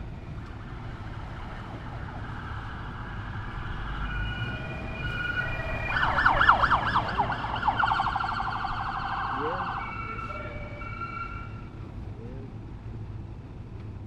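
Police car sirens of backup units arriving code 3. They grow louder, switch to a rapid warble from about six seconds in, and die away around ten seconds.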